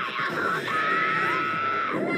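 Anime soundtrack audio: a character's shouted voice, then a long high held scream, with music underneath.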